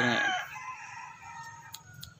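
A rooster crowing faintly: one long, steady call that follows a spoken word and fades out just before the end.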